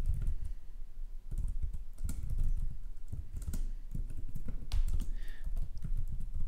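Typing on a computer keyboard: a quick, irregular run of keystrokes with a brief pause about a second in.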